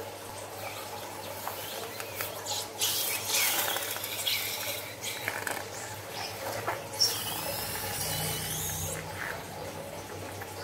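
Scissors snipping the tip of a rubber balloon filled with liquid, then the balloon squeezed so its purple contents squirt out through the cut and splatter into a bowl of glue and foam beads, with wet squelching and squeaks from the rubber neck near the end.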